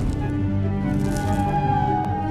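Music with a loud rushing, crackling sound effect laid over it, from a film soundtrack.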